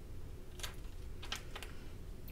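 A few soft taps and rustles of small pieces of faux leather and vinyl being handled and set down on a heat-pressing pad.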